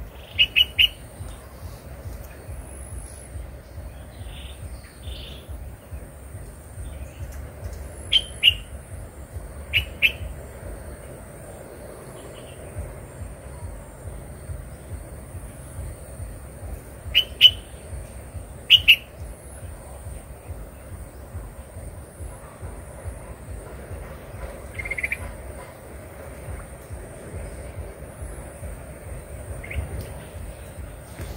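A bird calling in short, sharp groups of two or three notes, about six times over the stretch, over a steady low rumble.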